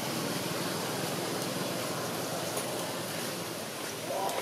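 Steady background noise: an even hiss with no distinct sound standing out.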